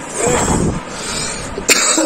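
A young man coughing hard, his mouth burning from an extremely hot Jolo chili chip, followed by a sharp click near the end.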